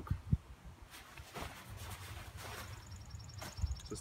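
Hiking clothes and gloved hands being handled: soft fabric rustling, with a single dull thump just after the start. A faint, rapid, high-pitched ticking comes in during the second half.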